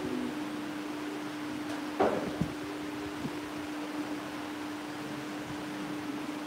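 Steady background hum and hiss of a large room, with one sharp knock about two seconds in.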